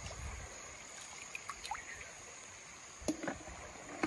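Shallow stream water sloshing and splashing around someone wading and feeling through it by hand. A few faint short chirps come in the middle, and there is a sharper knock or splash about three seconds in.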